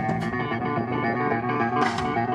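Live band playing, led by electric guitar and bass guitar.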